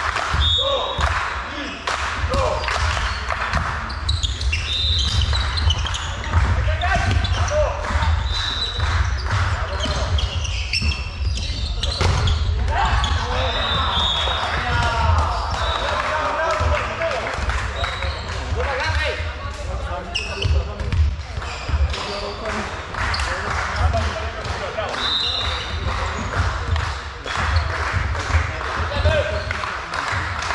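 Indoor volleyball in a large, echoing sports hall: repeated thuds of the ball being struck and bounced, players' voices calling out, and short high squeaks every few seconds, over a steady low hum.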